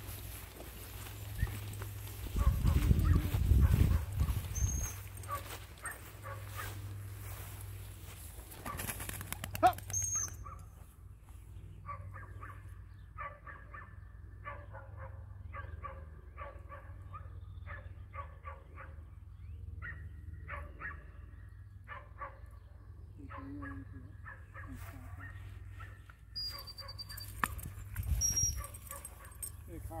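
A dog barking and yipping in many short, repeated bursts through the second half. Before that there is rustling from walking through tall grass, with a loud low rumble about two to four seconds in. A few thin, high chirps come now and then.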